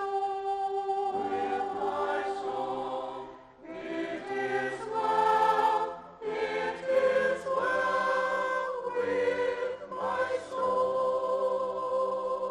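Mixed church choir of men and women singing with grand piano accompaniment, in sustained phrases with short breaks about three and a half and six seconds in.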